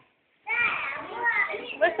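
Young children's voices, chattering and calling out as they play, starting about half a second in after a brief silence.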